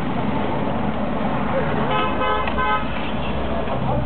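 A vehicle horn gives three quick toots about two seconds in, over the steady low rumble of the Mercedes taxi's engine and road noise heard from inside the cabin.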